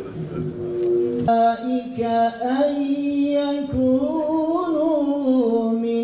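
An imam chanting a religious recitation into a microphone: one man's voice holding long, melismatic notes that slowly rise and fall, starting about a second in.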